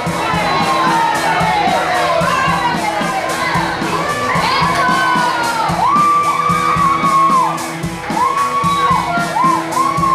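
Spectators cheering and shouting, with many high-pitched yells held for about half a second to a second each, loudest from the middle of the stretch on, over background music with a steady beat.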